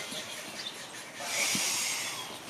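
A forceful hissing out-breath, starting a little over a second in and lasting almost a second, as the kneeling aikidoka drives his partner's arms up in kokyu dosa, with faint knocks of knees and cloth on the mat before it.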